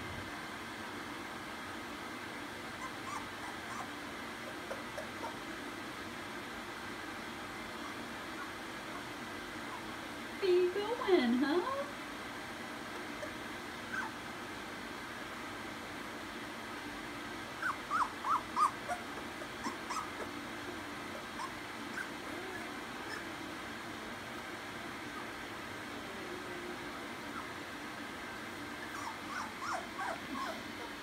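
Two-week-old puppies whimpering and squeaking in a pile: a louder wavering cry about eleven seconds in, then a quick run of short high squeaks a few seconds later, over a steady background hiss.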